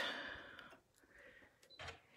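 Mostly quiet, with faint small clicks of a sewing machine needle being threaded with a needle threader. A short click comes near the end.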